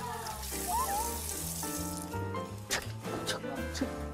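Kitchen faucet running as hands are rinsed under it, over background music with a steady bass line. The running water is clearest in the first half.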